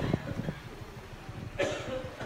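Motorbike engine running quietly, a low rapid putter, with a short voice-like sound near the end.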